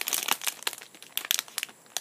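Two foil My Little Pony blind-bag packets crinkling as they are handled, a run of irregular crackles that thins out in the second half.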